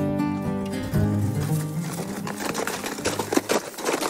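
Acoustic guitar music as a scene transition: a strummed chord rings and fades away. A few sharp clicks follow in the second half.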